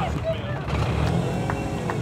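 Peugeot 208 Rally4 rally car's engine idling steadily with a low rumble, with voices faintly in the background.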